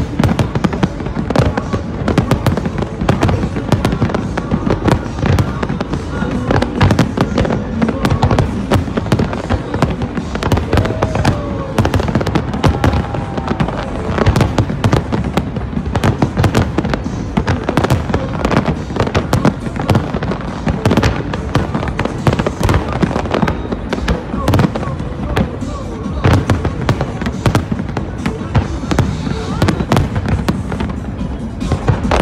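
Aerial firework shells bursting in a dense, continuous barrage, many bangs a second with no pause.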